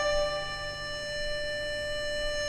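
Chinese bamboo flute (dizi) holding one long, steady note, with a low sustained note from the accompanying ensemble underneath.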